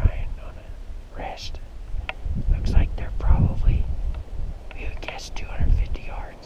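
Hushed whispering, with low wind rumble buffeting the microphone.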